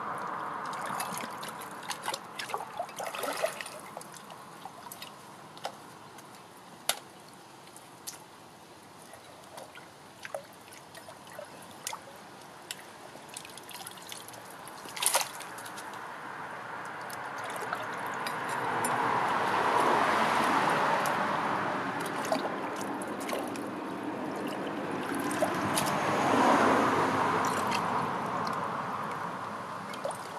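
Shallow brook water trickling and sloshing around a hand trowel as it scrapes out debris from under pipes in the stream, with scattered small clicks and splashes. The trapped water is draining through as the blockage is cleared. Two slow swells of louder rushing noise rise and fade in the second half.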